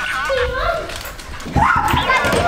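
A dog yipping and whining among children's excited voices, with a sudden louder burst about one and a half seconds in.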